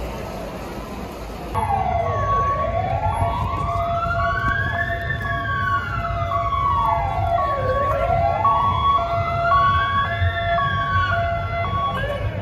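Police siren starting suddenly about a second and a half in, a slow wail that rises and falls twice, with a second siren tone under it stepping back and forth between two pitches.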